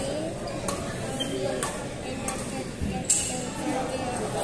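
Badminton rackets striking a shuttlecock in a rally: about four sharp pings roughly a second apart, the loudest about three seconds in, over faint chatter echoing in a large hall.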